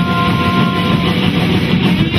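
Live rock band playing loud: distorted electric guitars, bass and drums in a dense wall of sound, with a held high note over the first second.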